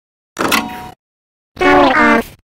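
A sharp click-like noise, the tower's power switch being pressed, a third of a second in. About a second later the cartoon cow lets out a loud voiced cry on a fairly steady pitch, lasting under a second.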